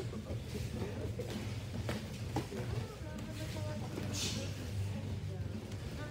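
Kickboxing sparring: a few sharp thuds of gloved punches and shin-guarded kicks landing, over indistinct background voices and a steady low hum.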